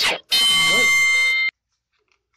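Electronic buzzer sounding once, a loud steady buzz lasting just over a second that starts and stops abruptly, like a game-show wrong-answer buzzer, marking a guess as wrong.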